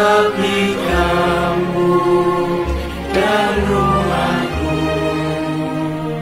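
A song sung by several voices over instrumental backing, with a bass line moving under the melody.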